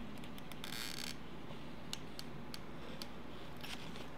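Hand work with decorative paper and a hot glue gun: a short paper rustle about half a second in, then scattered light clicks, over a faint steady low hum.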